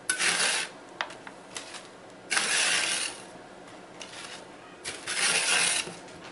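Metal scraper dragged across a stainless steel freeze-dryer tray, breaking up and scraping loose dry, flaky freeze-dried milk: three scrapes of half a second to a second each, with a few light clicks between them.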